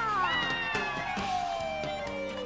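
Live forró band music in which a long note slides steadily down in pitch, over the band's continuing beat.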